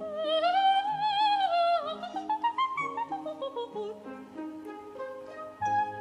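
Operatic soprano singing with wide vibrato over an orchestra: a held high phrase that climbs, then a quick run of notes stepping downward, while the orchestra plays short detached chords beneath.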